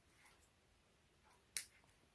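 Mostly quiet, with a few faint short clicks, the sharpest about one and a half seconds in, from small scissors snipping off excess trim.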